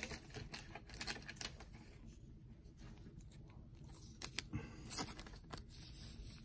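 Faint, scattered clicks and rustling of trading cards and a clear plastic card sleeve being handled.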